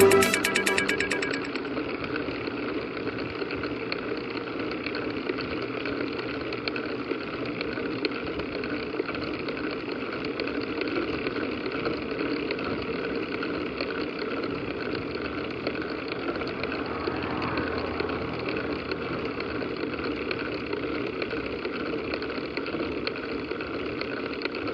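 Electronic music fades out in the first second or two. Then comes the steady, even rolling noise of a bicycle climbing a paved road, picked up by a camera on the handlebars.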